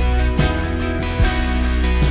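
Live worship band playing a song on guitars, keyboard and drum kit, with drum hits about half a second in and just after a second.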